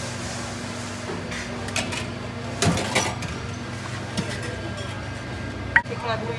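Metal ladle clinking against a steel serving bowl and stainless steam-table pans as soup is served: a few sharp clinks, the loudest near the end, over a steady low hum.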